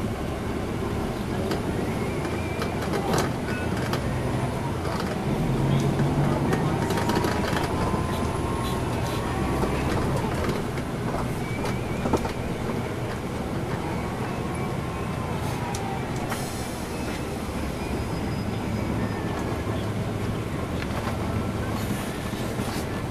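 Inside a 2010 NABI 416.15 transit bus under way: its Cummins ISL9 inline-six diesel runs with a steady low rumble, growing louder for a few seconds near the start, while a faint whine slowly rises and falls in pitch. A couple of short knocks or rattles sound from the cabin.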